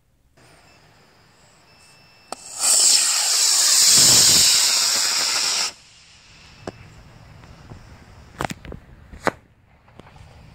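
Solid-fuel model rocket motor lighting with a click and burning for about three seconds as a loud, steady hiss that cuts off suddenly at burnout. A few sharp pops follow near the end.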